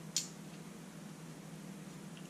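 One light click of small carburetor parts handled in the fingers, shortly after the start, over a steady low hum.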